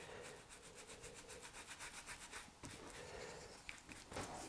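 Faint, quick rubbing strokes of a paintbrush working oil paint, Payne's Grey being mixed into green on the palette, several strokes a second.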